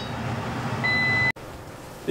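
A single high electronic beep from a kitchen appliance, lasting about half a second over a steady background hiss, then cut off abruptly and followed by quieter room tone.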